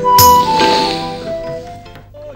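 A single sharp clink of crockery, about a quarter second in, ringing away over background music that fades out toward the end.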